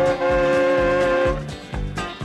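Soundtrack music: a long held note over a steady low beat. The held note stops about one and a half seconds in, and the beat carries on.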